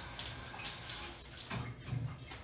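Shower running behind a closed curtain, the water spattering unevenly, with a low dull knock near the end.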